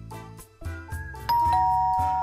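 Background music with a beat, then about a second in a two-note ding-dong chime, a higher note followed by a lower one, rings out loudly and slowly fades: a notification-bell sound effect laid over the music.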